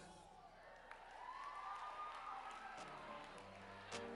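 A faint lull after the song's fade-out, holding quiet audience noise with a few scattered claps and a faint rising call. Low, steady music notes come in about three seconds in.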